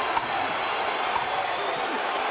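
Boxing crowd cheering and shouting steadily.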